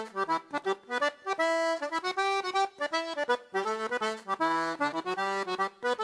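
Accordion playing an instrumental passage of quick, short notes, with chords under the melody.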